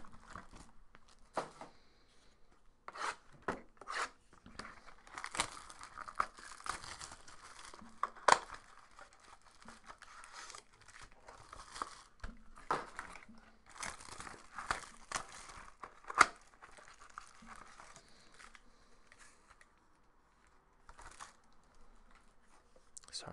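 Clear plastic shrink wrap being torn and crumpled off a trading-card box: irregular crinkling with a few sharp snaps, fading to quieter handling in the last few seconds.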